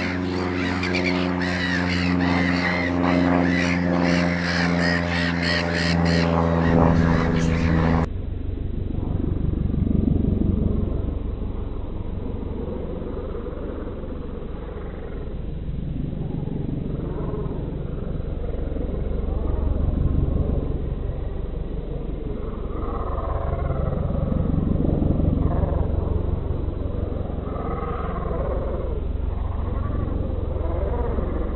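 A steady engine drone at an even pitch, ending abruptly about eight seconds in. After that comes a lower steady rumble with irregular fainter sounds over it.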